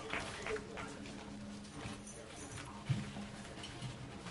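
Quiet hall room tone with a steady low hum and a soft low thump about three seconds in.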